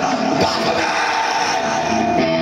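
Heavy metal band playing live and loud: distorted electric guitar, bass guitar and drums together.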